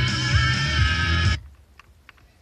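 FM radio tuned to 90.1 MHz playing a guitar-led song, which cuts off abruptly about one and a half seconds in as the tuner steps off the station. Near silence follows, broken by a few faint ticks while the tuner is muted between frequencies.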